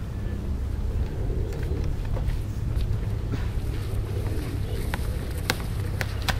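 Wind rumbling on the microphone, a steady low noise with a few faint ticks.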